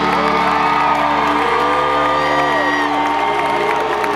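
Live rock band's held chord ringing out with a steady drone, while the crowd cheers and whoops over it in rising and falling shouts.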